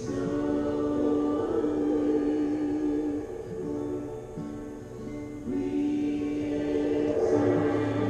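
Live worship music: voices singing long, held notes in a slow, sustained passage. There is no clear drum beat, and the sound eases off briefly in the middle.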